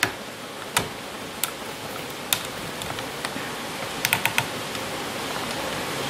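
Sharp plastic clicks from an ASUS U32U laptop as it is operated: a few single clicks spaced out, then a quick run of four about four seconds in, over a steady hiss.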